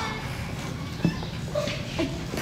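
Background voices of people, faint and indistinct, with two short knocks, one at the start and one about a second in.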